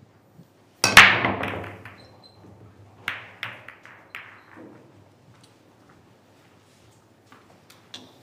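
Chinese eight-ball break shot. About a second in, the cue ball smashes into the racked balls with a loud crack and a quick run of ball-on-ball clicks that dies away. A second flurry of clacks follows around three to four and a half seconds in as the spread balls collide and hit the cushions.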